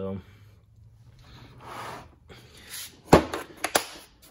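Blow-molded plastic Tekton socket-set case being handled and closed: a soft rustle, then a sharp plastic snap about three seconds in, followed quickly by two lighter clicks as the lid and latches shut.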